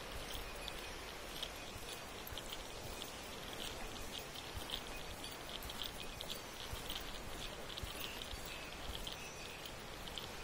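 Steady rush of a river running high and fast in flood, with many short high-pitched chirps scattered irregularly over it.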